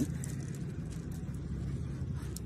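A steady low mechanical hum, even throughout, with no sound from the puppy standing out above it.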